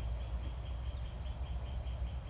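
Faint, high-pitched chirps from a small animal, evenly repeated about five times a second, over a steady low rumble.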